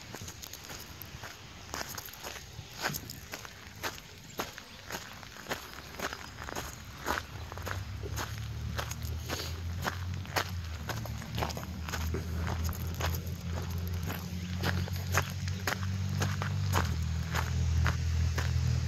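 Footsteps crunching on a gravel path at a steady walking pace, about two steps a second. A low rumble rises underneath from about halfway and grows louder toward the end.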